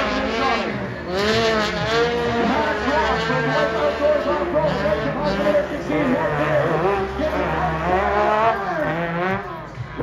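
Several racing side-by-side UTV engines revving up and down over and over, overlapping rising and falling whines as the drivers work the throttle through the turns.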